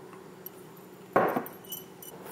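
A metal tablespoon clinking against a stainless steel mixing bowl: a small tick, then a sharper clink just past halfway with a brief high ring after it. A faint steady hum runs underneath.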